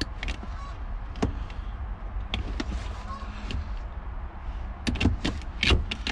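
Scattered clicks and knocks of hands working under a truck seat on the power-seat wiring harness, about one a second, then a quick run of sharper snaps near the end as wire cutters cut the harness free.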